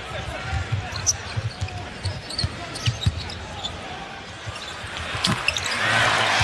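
A basketball dribbled on a hardwood arena floor: a steady run of low bounces, about two to three a second, over arena crowd noise. The crowd noise swells about five seconds in.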